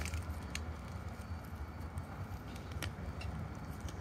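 Quiet handling of a wet green luffa gourd: a few faint clicks and crackles over a low, steady rumble.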